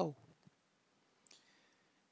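Two faint computer mouse clicks, one about half a second in and another a little past a second in, made while selecting objects in the software.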